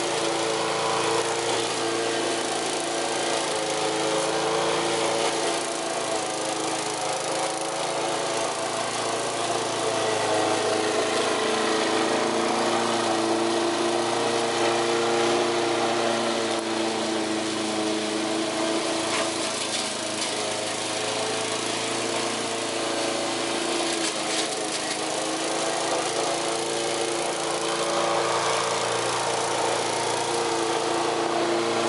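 Walk-behind petrol rotary lawn mower with a Briggs & Stratton engine, running steadily while mowing grass. Its engine note dips and recovers slightly as it works through the grass.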